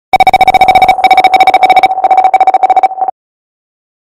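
An electronic ringer tone trilling rapidly, like a phone ringing, in three bursts of about a second each. It stops suddenly about three seconds in.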